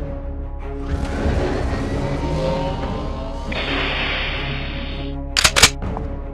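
Soundtrack music playing under a rushing noise effect that swells about a second in and turns into a steady hiss for a second and a half. Two sharp cracks follow in quick succession near the end.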